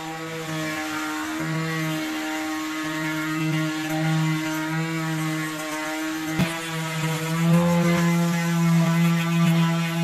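Small DC motor of a homemade flexible-shaft rotary tool running steadily with a humming whine. There is a sharp click about six seconds in. The sound gets louder and rougher in the second half as the sanding drum is worked against steel pliers.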